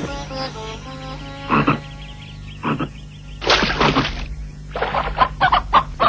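A chicken squawking and clucking in rapid rough bursts, starting about halfway through and getting busier toward the end, over light background music.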